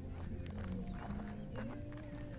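Footsteps on dry grass, a light step about every half second, over faint distant voices.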